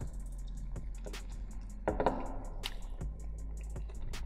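Wet mouth clicks and chewing as a breaded nugget dipped in hot sauce is eaten, with scattered short clicks, the most distinct about halfway through. Soft background music runs underneath.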